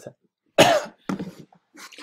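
A person coughs twice, a sharp louder cough about half a second in and a smaller one just after.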